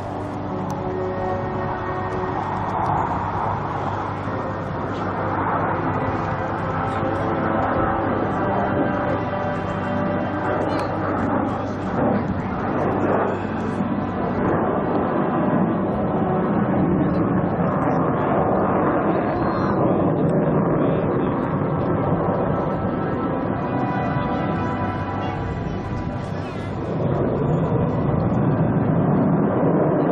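Jet engines of a two-plane aerobatic formation, a rushing noise that swells and eases as the pair climbs vertically and dives through a split-S, growing louder near the end. Music plays underneath on the air show's loudspeakers.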